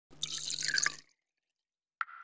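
Cartoon sound effect of liquid being poured and dripping into a glass flask, a hissing, bubbly splash lasting about a second.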